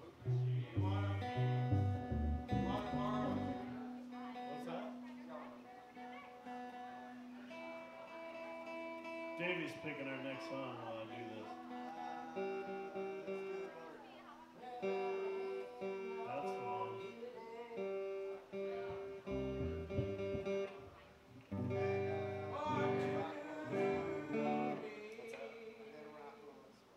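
Acoustic guitar played live with an upright bass, slow ringing notes and chords, the bass notes strongest in the first few seconds and again a few seconds before the end.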